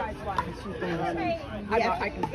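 Several people talking in casual conversation.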